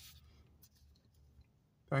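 Faint rustling and light handling noise as a paper coffee cup is picked up, with a few soft ticks; a man starts speaking right at the end.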